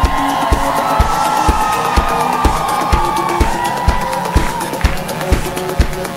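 Live electronic pop band playing, driven by a steady kick drum at about two beats a second, with crowd cheering over the music that fades out about two-thirds of the way through.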